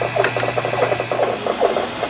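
High-voltage experimental apparatus running: a steady electrical hum under a rapid, uneven chatter of clicks, about four or five a second. The hum and a thin high whine cut off about a second and a half in.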